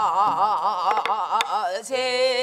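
A woman singing a Namdo minyo (southern Korean folk song) line, holding notes with a wide, fast vibrato of about four wavers a second. There are two sharp knocks about a second in, likely strokes on the barrel drum.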